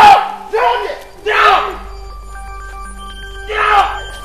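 Film dialogue in short, loud bursts of voice. Under and between them runs background music of sustained electronic tones, held alone for about a second and a half in the middle.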